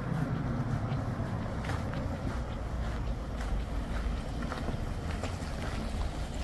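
A car driving slowly past at close range, its engine and tyres on the rough concrete giving a low rumble.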